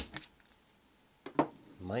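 A sharp metallic click as a centre punch strikes the rivet on the metal base of a diecast toy car, followed by a few faint handling clicks and another sharp metal click a little past halfway.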